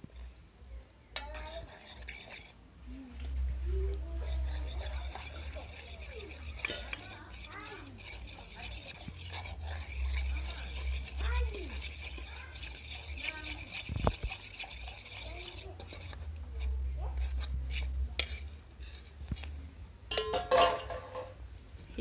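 Spoon stirring and scraping in a metal saucepan, with scattered clinks of metal, over a steady low rumble.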